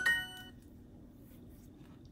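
Duolingo's correct-answer chime: a short bright ding right at the start that rings out over about half a second, followed by faint room tone.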